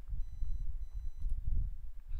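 Low, steady background rumble with two faint, thin high-pitched tones about half a second each in the first second and a half.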